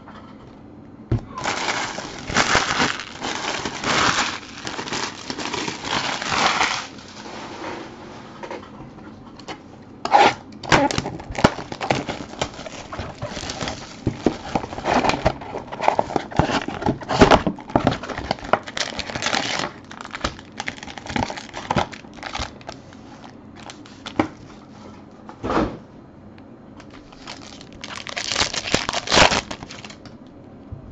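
Plastic wrapping crinkling and tearing as a sealed box of trading-card packs is unwrapped and opened, with foil packs rustling and cardboard knocking. The crinkling comes in bursts: a long one early, a run of sharp clicks and rustles through the middle, and another burst near the end.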